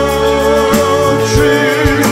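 Live pop-rock band playing, with held bass notes, a few drum hits and a long sustained melody note over them.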